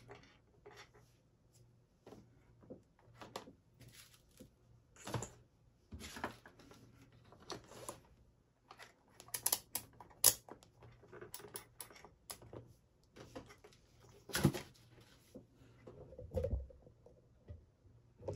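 Irregular small clicks, taps and rustles of multimeter probes, wires and plastic connectors being handled on a workbench, with a few sharper clicks and a dull knock.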